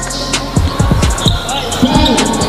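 Repeated thumps of a basketball being dribbled on an indoor court, with background music running under them.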